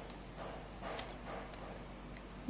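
Faint soft rustles and light taps of tarot cards being handled and gathered, with two brief swells about half a second and a second in.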